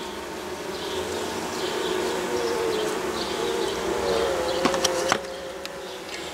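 Honeybees buzzing around an opened mating nuc, one bee flying close so that its buzz wavers up and down in pitch. Two light clicks sound about five seconds in.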